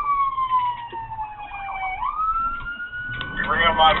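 Police car siren wailing. Its pitch falls slowly for about two seconds, then sweeps quickly back up and holds high.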